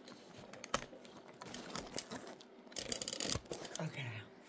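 Handling noise from a phone camera being picked up and repositioned: scattered clicks and rubbing, with a quick run of clicks and rattles about three seconds in.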